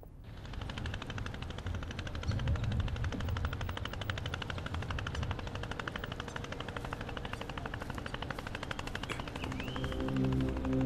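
Small river boat's engine running steadily, a fast, even chugging train of pulses over a low rumble.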